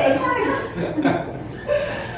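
Women chuckling and laughing after a spoken "shut up!", the laughter fading out in the second half.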